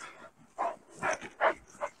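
A dog making about four short, fairly quiet vocal sounds, roughly half a second apart.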